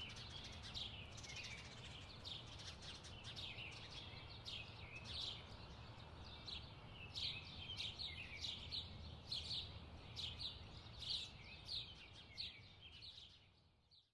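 Birds chirping: a faint, busy stream of short, high chirps from several birds over a low, steady rumble, fading out just before the end.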